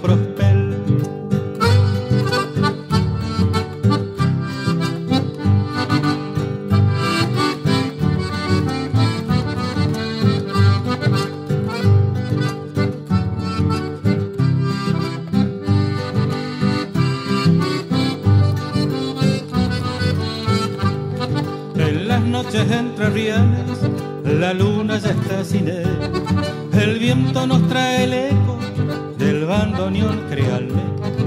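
Instrumental passage of a chamarrita played by a chamamé group: a bandoneón carries the melody over guitar accompaniment, with a steady dance pulse.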